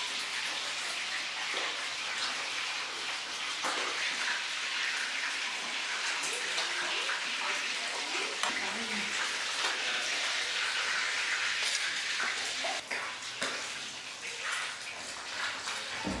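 Steady hissing kitchen noise while food is served, with a few short clinks of metal utensils against steel pots and dishes.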